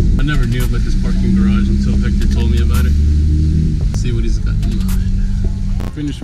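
Hyundai Genesis Coupe 3.8-litre V6 with an aftermarket exhaust, driven at low speed and heard from inside the cabin as a deep drone that swells heavier for about a second midway. A voice with music plays over it.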